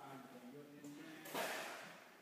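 A faint, muffled voice, then about a second and a half in a sudden noisy thump that fades away.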